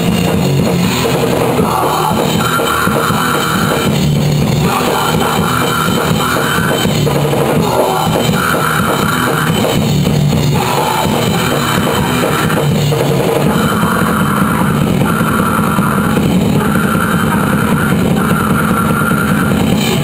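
Grindcore band playing live and loud: distorted guitar and a fast drum kit with cymbals, with screamed vocals over it.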